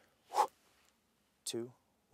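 Speech only: a man counting down in a low voice, two short words with silence between them.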